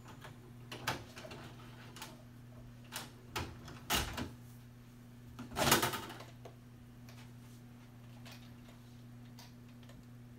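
Scattered plastic clicks and knocks of a VHS cassette being handled after ejection, the loudest cluster about five and a half seconds in, over a steady low hum.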